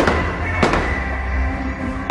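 Aerial fireworks bursting, a sharp bang at the start and another about two-thirds of a second in, over music with a steady low bass.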